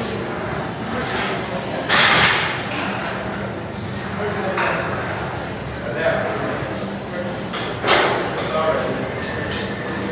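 Indistinct voices and background music echoing in a large gym hall, with two short louder noises, one about two seconds in and one near eight seconds.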